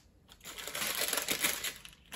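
Small plastic sweets packet crinkling as it is handled and torn open by hand. The crackle starts about half a second in and lasts about a second and a half.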